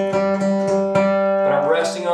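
Steel-string acoustic guitar flatpicked in a fast, even down-down-up picking pattern, a pick stroke roughly every fifth of a second, stopping about one and a half seconds in.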